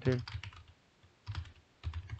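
Light taps and clicks of a stylus on a pen tablet as a word is hand-written in digital ink, a few short strokes about a second in and again near the end.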